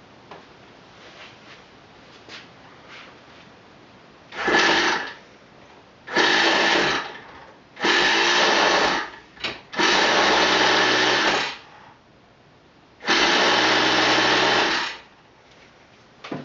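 Hand-held electric starter spinning an O.S. Engines 49-PI Type II 0.30 cu in Wankel rotary model engine, in five bursts of one to two seconds each with short pauses between. The engine is being cranked and has not yet started.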